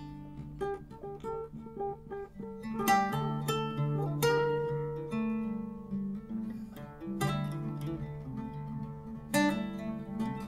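Background music on acoustic guitar: picked notes ringing out, with sharper strummed chords a few times, about three seconds in, four seconds in, seven seconds in and near the end.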